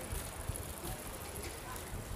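Outdoor street ambience: indistinct voices of passers-by over a steady background hum, with low rumbling from wind or handling on the microphone.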